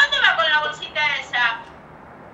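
A woman's voice speaking a short phrase, then low background hiss.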